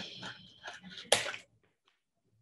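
Scissors cutting into a thin black plastic packaging tray, with crackling of the plastic and one sharp snap about a second in; the sound stops about one and a half seconds in.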